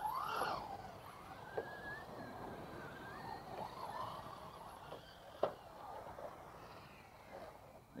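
Electric RC cars driving on a dirt track, their motors' faint whine rising and falling in pitch with the throttle. There is a sharp knock about five and a half seconds in.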